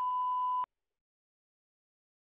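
A steady test-card tone, a single pure beep at about 1 kHz, that cuts off suddenly well under a second in, leaving dead silence.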